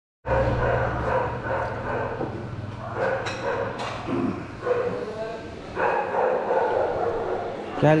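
Indistinct background voices with room noise, and a short spoken word near the end.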